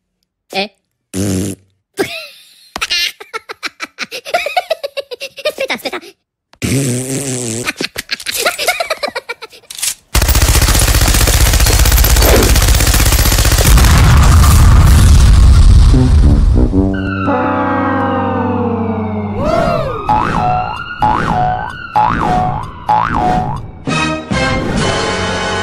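A string of edited cartoon sound effects: short clipped noises and voice snippets for about ten seconds, then a loud, steady rushing blast lasting about seven seconds, then sliding whistle-like tones over music.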